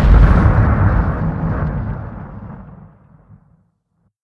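Explosion sound effect, its low rumble dying away steadily and fading out about three and a half seconds in.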